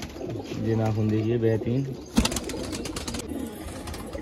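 Domestic pigeons cooing in a loft, with a low drawn-out call lasting about a second near the start and a single sharp knock about halfway through.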